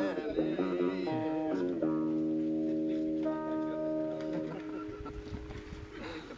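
Singing trails off, then a guitar chord is struck about two seconds in and left ringing, changing once and dying away as the song ends.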